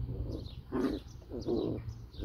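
Puppies making short whining calls, about five in two seconds, each rising and falling in pitch, while they chew and play-bite.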